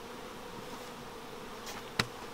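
Honey bees buzzing around open hives in a steady, even hum, with a light knock at the very end.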